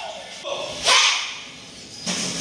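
A group of girls shouting together in one short, sharp yell as they strike during a self-defence drill, loudest about halfway through.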